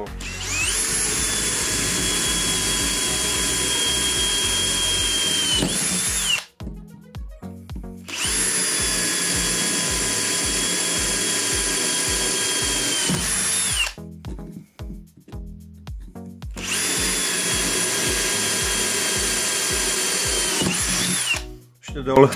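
Brushless cordless drill (Villager Fuse VPL 8120, 18 V) running at 2000 rpm with a 6 mm bit, drilling holes in a steel bar. There are three runs of about six seconds each, with short pauses between them. Each run is a steady high whine that winds up at the start and winds down at the end.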